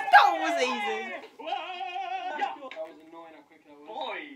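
Excited people laughing and shrieking in high voices, with cries that swoop downward and waver. A sharp clap comes right at the start.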